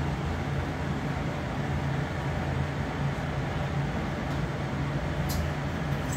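Steady low hum and hiss of a kitchen while a spoon stirs macaroni in a saucepan on a lit gas burner, with one light clink about five seconds in.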